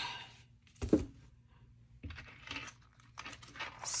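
A light knock about a second in, then soft crinkling and rustling of clear plastic photo sleeves and paper bills as a disc-bound binder is opened and handled.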